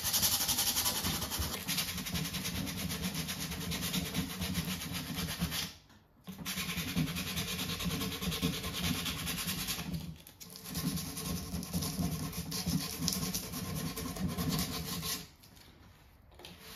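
Hand sanding with a small sanding pad on the painted, lacquered wood of a cabinet, rubbing through the top coat to distress the edges. Quick scrubbing strokes, with two short pauses and a stop near the end.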